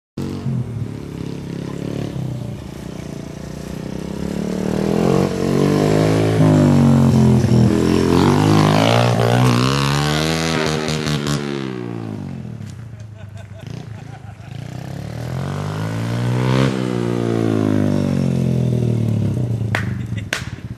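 A vehicle engine revving up and easing off twice, the first time louder and longer, as it drives past at speed.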